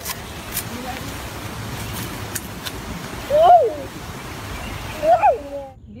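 Steady rushing outdoor noise with two short, high voice sounds, one about halfway through and one near the end. The noise cuts off suddenly just before the end.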